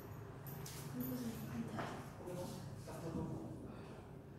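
Indistinct speech from a voice in the room, with a few short soft swishes about a second apart.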